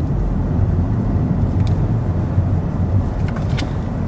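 Steady low rumble of a car's cabin while driving, engine and road noise heard from inside, with a few light clicks near the middle and end.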